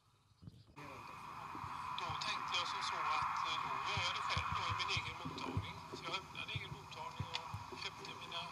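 A man speaking on a film soundtrack played over loudspeakers into a room, over a steady background noise that starts abruptly about a second in.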